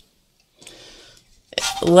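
Brief faint scrubbing of a paintbrush in the pans of a plastic kid's watercolor palette, lasting well under a second and starting about half a second in.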